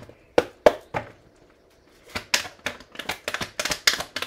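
Tarot cards handled on a hard tabletop: three sharp taps in the first second, a short pause, then a quick run of clicks and slaps as the deck is shuffled and a card drawn.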